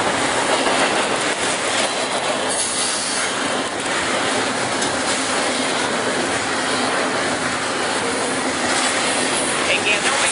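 Double-stack container freight train passing close by at speed: a loud, steady noise of steel wheels running on the rails.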